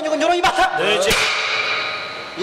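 Sharp hand claps of a debating monk in Tibetan Buddhist monastic debate, the loudest a little after one second in and ringing on in the hall, mixed with bursts of his loud voice.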